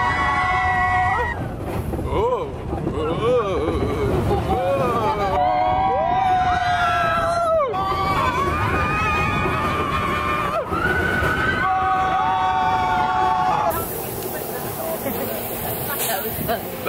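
Riders screaming and whooping on the Big Thunder Mountain Railroad mine-train roller coaster, with long held screams, one falling away at its end, over the low rumble of the train running on its track. The ride noise drops near the end as the train slows.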